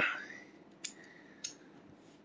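Two light clicks about half a second apart from a Sig P238 pistol as its takedown lever is worked out of the frame during field stripping.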